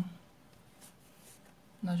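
Faint scratchy rustling of yarn on a crochet hook as the hands begin a magic ring, with a couple of light ticks in the middle; a woman's voice is heard at the very start and just before the end.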